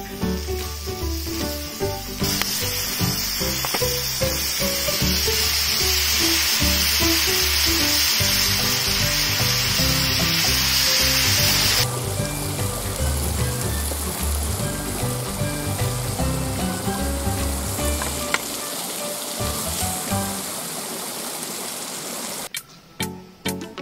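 Sauce and meat juices sizzling loudly on a hamburger steak in a hot cast grill pan, starting about two seconds in and cutting off sharply about halfway through. Background music with a bass line plays throughout.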